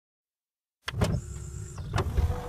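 A sound effect for an animated logo intro: silence, then a low mechanical whir that starts suddenly a little under a second in, with a few sharp clicks.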